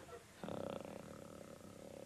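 A man sick with a bad cold makes one long, rattling, congested drone in his throat as he dozes off, starting about half a second in.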